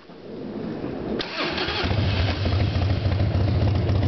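A 1997 Harley-Davidson Heritage Softail's Evolution V-twin, fitted with Screamin' Eagle exhaust pipes, starting up about a second in and settling into a steady idle.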